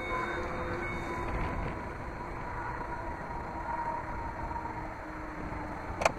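2010 Ford Flex's power liftgate closing under its electric motor: a steady whine that runs for several seconds, ending in a thud near the end as the gate latches shut.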